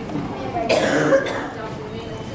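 A single cough about three-quarters of a second in, over low murmured chatter from a group of people.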